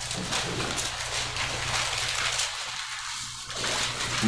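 Thin Bible pages rustling and crackling as they are leafed through to find a passage.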